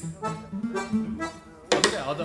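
Brass band music: a bass line bouncing between two low notes under pitched horn parts, with a sudden loud accent near the end.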